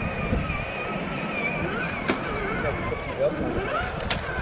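A 1/10-scale RC crawler truck's electric motor and gears whining as it drives past, the pitch wavering up and down with the throttle. There is a sharp click about two seconds in.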